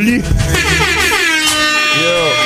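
An air-horn sound effect dropped over the hip-hop beat, a stack of tones sliding down in pitch and then holding steady as the beat's bass cuts out.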